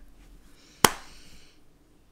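A single sharp tap a little under a second in, over faint room tone.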